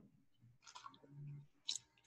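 Faint mouth sounds of wine being tasted: a brief slurping sip, a short low hum, then a sharp click near the end.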